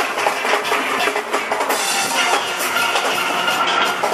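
Steel band playing: many steelpans struck together in a steady rhythm over a drum kit's beat.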